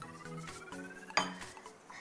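Sugar poured from a small bowl into a glass bowl of milk: a light patter of falling granules, with one sharp clink a little over a second in as the bowls touch.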